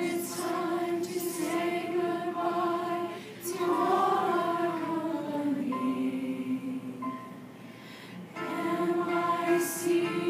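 A choir singing long held notes from a Disney medley choral arrangement. It drops quieter for a moment partway through, then the voices come back in fuller about eight seconds in.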